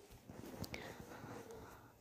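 Very quiet room tone with a few faint ticks.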